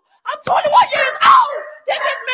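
A woman shouting in a high, strained, wailing voice into the phone's microphone.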